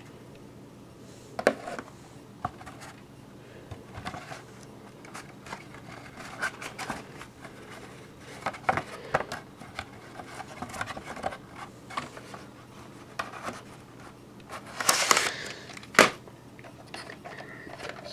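VHS cassettes and a cardboard sleeve being handled: scattered plastic clicks and taps with light rubbing. A louder scraping shuffle comes near the end, followed by a sharp click.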